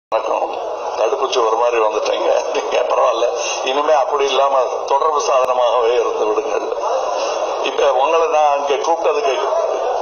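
Only speech: a man talking steadily into a handheld microphone.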